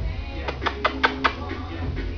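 Two chihuahuas play-fighting, with a quick run of about five short, sharp sounds about half a second in. A steady tonal background runs underneath.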